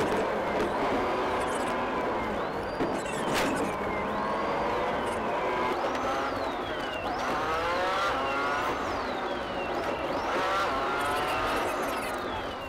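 Police siren wailing, each cycle jumping up and falling away about every two seconds, over a car engine revving up hard several times as the pursuing cruiser accelerates.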